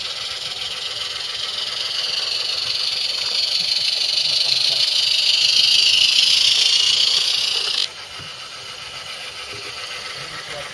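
Steady hiss of a live-steam garden-scale model locomotive running past, growing louder as it nears and stopping suddenly about eight seconds in.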